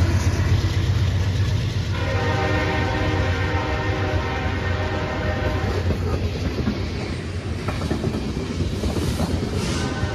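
Freight train passing close by: diesel locomotive engines and then tank cars' wheels rumbling and clacking over the rails. A train horn sounds over the rumble from about two seconds in, held for about five seconds.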